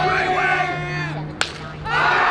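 A single sharp crack of a bat hitting a pitched baseball, about one and a half seconds in, after shouting voices from the dugout and stands; crowd cheering swells right at the end.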